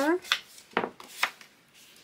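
Hand distressing tool scraping along the edge of a sheet of paper to rough it up, a few quick strokes in the first second and a half.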